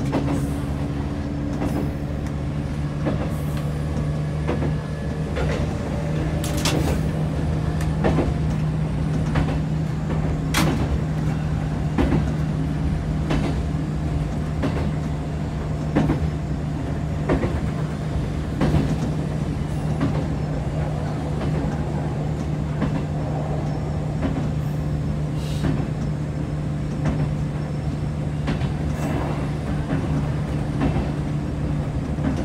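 Electric train running steadily on the JR Wakayama Line, heard from just behind the driver's cab: a constant low motor hum with a short clack of the wheels over rail joints every second or two.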